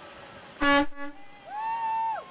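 A passing car's horn honks once, a flat steady tone about half a second in, followed near the end by a second, higher steady tone lasting about as long.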